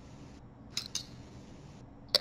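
Two short, sharp clicks about a fifth of a second apart, a little under a second in, over faint room hiss.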